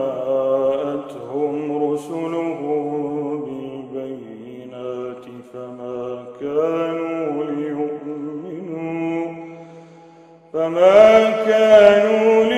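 A man's solo voice reciting the Quran in melodic tajweed style, drawing out long held, ornamented notes. About ten seconds in the voice falls away briefly, then comes back louder and higher in pitch near the end.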